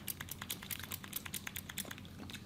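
Small pump spray bottle being pressed again and again: a quick run of short, sharp spritzes, several a second, fairly quiet.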